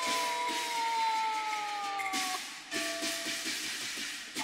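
Cantonese opera music: one long held note that slides slowly down in pitch for about two seconds. A crash comes at the start and another about two seconds in.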